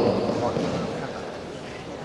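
A man's spoken Italian announcement trails off in a large hall's echo at the start, leaving the steady background noise of a big indoor sports hall, with no distinct sounds standing out.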